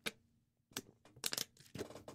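A man drinking water from a glass or bottle: a few short, clicky sips and swallows, bunched together in the second half. The water has gone down the wrong way into his lungs.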